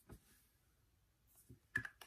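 A few faint plastic clicks as a small cosmetic stick and its cap are handled, with one light click right at the start and several more close together near the end.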